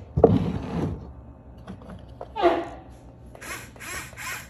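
Yigong radio-controlled model excavator working on a sand pile: its small electric drive motors whine in short spurts and its tracks clatter as it claws at the slope, with a quick run of clicks near the end.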